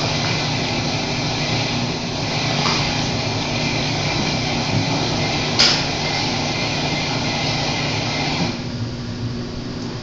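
Steady mechanical whooshing with a faint hum, like an indoor appliance running, with a single sharp click about five and a half seconds in. The whooshing drops noticeably about eight and a half seconds in.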